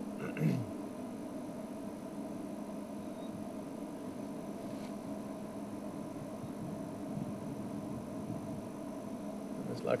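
A man clears his throat once at the start, then a steady low hum with faint held tones carries on unchanged, with no bird calls.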